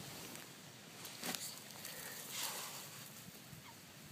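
Faint, distant waterbird calls: a few short calls that fall in pitch. There is a brief rustle about a second in.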